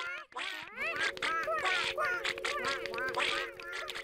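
Squeaky, quacking nonsense chatter of cartoon puppet characters: many quick rising and falling chirps. Under it, from about a second in, a steady held note.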